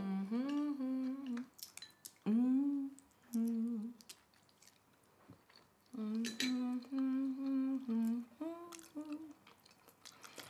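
A person humming with closed lips in a string of short 'mm' sounds, some held on one pitch and some sliding upward, in several bursts with pauses between. There are a few light clicks in the quieter gaps.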